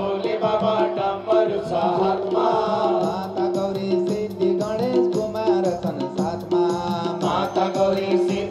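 Hindu devotional bhajan sung over a steady beat of drum and hand-clapping.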